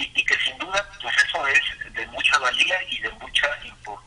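Speech only: a man talking in Spanish over a telephone line.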